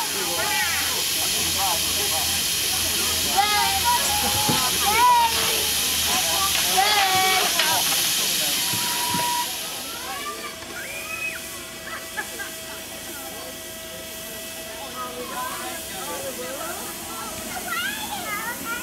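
Miniature live-steam locomotive, a pseudo Midland Compound, hissing steam loudly close by with people's voices over it. About halfway through, the hiss drops away, leaving quieter voices and a faint steady tone.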